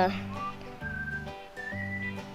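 Background music: held chords that change about once a second, under a thin, whistle-like melody.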